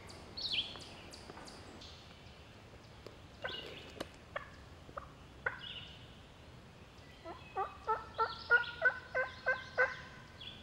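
A wild turkey gobbling: a run of about ten pulsing notes in the last three seconds, the loudest sound, a shock gobble answering a crow locator call. Near the start, short falling caws from the locator call.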